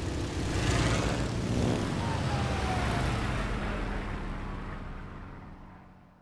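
Biplane engine and propeller running in flight, with wind rushing past, steady and then fading out over the last two seconds.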